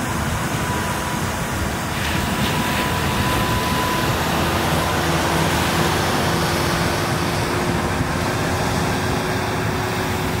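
Steady rushing noise of wind and surf at the shoreline, with a faint steady hum underneath from a few seconds in.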